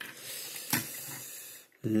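Steel tape measure blade being drawn out of its case: a steady sliding hiss with one brief louder scrape about three-quarters of a second in.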